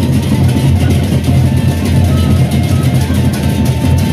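A Lombok gendang beleq ensemble playing loudly: large Sasak barrel drums beaten in a steady low pulse, with hand cymbals clashing in dense, rapid strokes over them.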